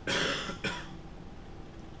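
A man coughing: one strong cough at the start and a shorter second one just after it.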